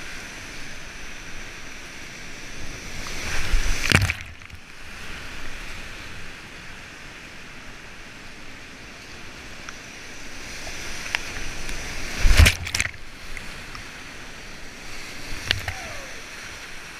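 Whitewater rapids rushing around a kayak, heard close up from the paddler's helmet camera. Two loud crashes of water come about four seconds in and again near twelve seconds as the boat runs through the waves, and each leaves the sound briefly muffled.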